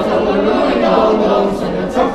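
A group of carolers, mostly children, singing a Romanian Christmas carol (colind) together without pause.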